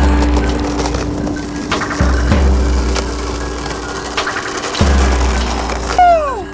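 Background music: a track with two steady held tones, deep bass notes entering at the start, about two seconds in and near the end, and scattered sharp drum strikes.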